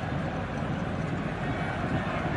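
Steady stadium ambience picked up by the pitch-side microphones: an even wash of background noise with no distinct event.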